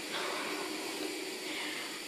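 Steady background hiss with no distinct sound events.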